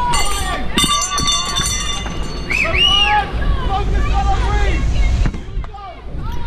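Raised voices shouting from below, heard over a steady low wind rumble on the camera's microphone, with a few sharp clicks and knocks.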